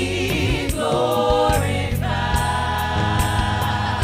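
Gospel praise team singing in harmony over a steady beat and bass line, the voices holding one long chord through the second half.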